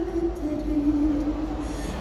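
Live ballad through a concert PA: a female singer holds one long, slowly falling note at the end of a sung line, over soft band accompaniment with a low bass rumble.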